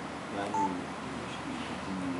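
A short single electronic beep, one steady tone about half a second in, over low room hum.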